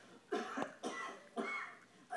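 A cartoon duck character giving a run of about four short coughs, played from a television.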